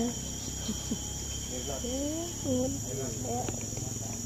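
Steady high-pitched drone of an insect chorus, with people's voices talking briefly about two seconds in.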